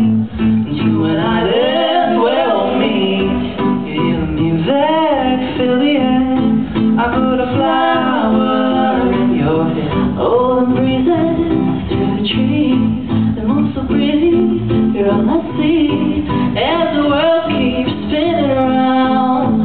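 Live acoustic duet: an acoustic guitar strummed steadily under a woman and a man singing long, gliding vocal lines.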